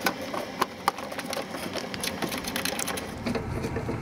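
Many small, irregular clicks and light plastic rattles as the headlight's mounting screws are set back in by hand.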